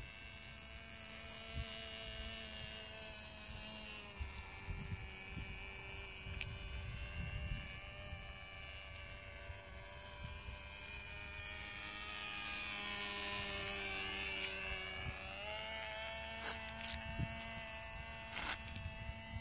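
Cox .049 Tee Dee two-stroke glow engine of a SIG Herr Star Cruiser model airplane in flight: a thin, high-revving buzz that drops in pitch about four seconds in and rises again near the end as the plane passes around, with a sweeping swell as it comes close.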